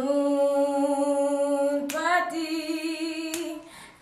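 A woman singing a worship song unaccompanied, holding one long steady note, then stepping up to a slightly higher held note about two seconds in that fades away near the end.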